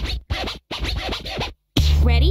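Electronic game music with record-scratch sounds, chopped into short bursts with brief gaps between them. A loud low bass note comes in near the end.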